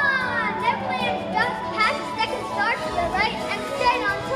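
Several children's voices calling and squealing excitedly in short, rising cries, over a steady low hum.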